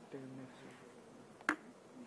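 A low voice murmurs briefly at the start, then a single sharp click sounds about one and a half seconds in.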